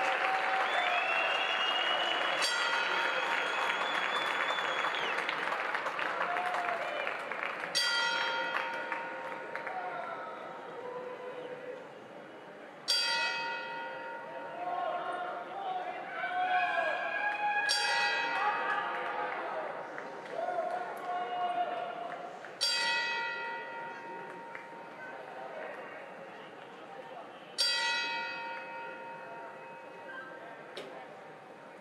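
Boxing ring bell struck at intervals of about five seconds in a memorial ten-bell count, each strike ringing on as it dies away. A crowd murmurs in a large hall beneath it, quieter after the first few strikes.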